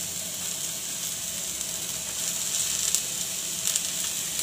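Chopped carrot, onion and green chilli sizzling steadily in a little hot oil in a pan as shredded cabbage is tipped in on top, with a few light ticks near the end.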